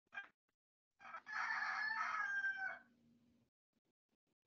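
A rooster crowing once, a call about two seconds long that drops a little in pitch at the end, heard through a video-call microphone. A short sound comes just before it.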